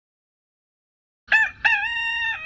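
Rooster crowing, starting just over a second in: a short note, then a longer held note that carries on.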